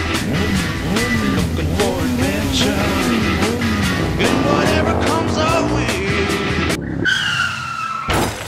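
Comic vehicle sound effect over music: an engine rising and falling in pitch again and again as the vehicle swerves, with tyre squeals. In the last second this gives way to a high whistle that sags slightly in pitch and then cuts off.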